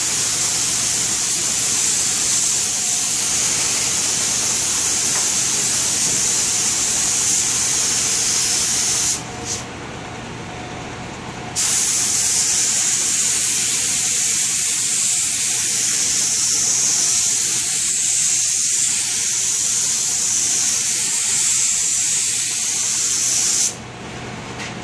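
Air-powered siphon-cup spray gun hissing as it sprays finish onto furniture, in two long passes. The first lasts about nine seconds and is followed by a brief burst. The second starts about two seconds later and stops just before the end.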